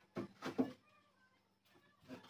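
Wooden bed-frame boards knocking against each other and the floor as they are handled, a few short knocks in the first second followed by faint creaks.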